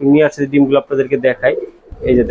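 Domestic pigeons cooing in a loft, mixed with a man's voice.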